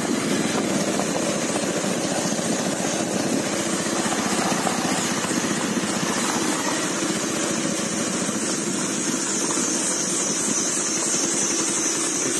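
Motorcycle engine running steadily while riding, an even drone that holds the same level throughout.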